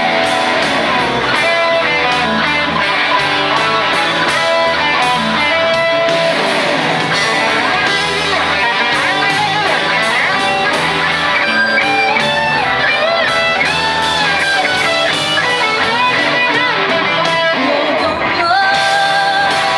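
Live rock band playing an instrumental passage: electric guitars over bass and drums with a steady cymbal beat. A lead line wavers and bends in pitch in the second half.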